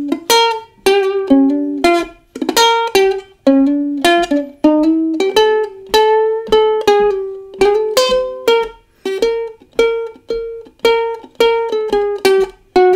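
A freshly restrung ukulele with new strings being played: a slow run of strummed chords, each left to ring and fade before the next.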